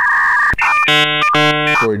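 An edited-in electronic 'loading' sound effect. It opens with a steady two-note beep, then from about half a second in runs through a quick series of short synthesized notes, like a ringtone jingle.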